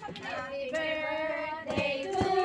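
Women singing in high voices, holding one long steady note through the middle.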